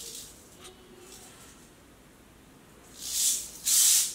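Canebrake rattlesnake hissing: two short hisses close together near the end, while it is restrained in a tube and being probed.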